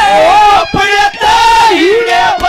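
A man singing a Haryanvi ragni at full voice through a PA, in long wavering held notes, with two brief breaks around the middle.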